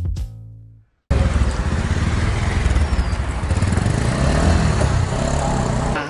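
Intro music fading out in the first second, then after a brief silence loud outdoor traffic noise with a motor vehicle engine running, its pitch rising and falling around the middle.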